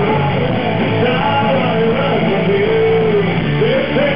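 Live rock band playing: electric guitars and drums under a male lead singer, who holds a long sung note near the end, heard from the audience.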